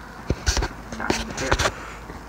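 Handling noise from a rubber mask with attached hair being stretched and fluffed by hand: a handful of short knocks and scuffs over about a second and a half.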